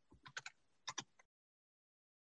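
A handful of short computer keyboard clicks in the first second, two of them in quick pairs, then the sound stops.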